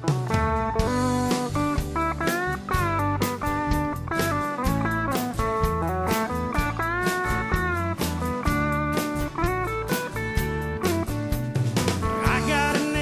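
Country band playing an instrumental intro: a lead guitar plays a melody with bent, sliding notes over a drum beat.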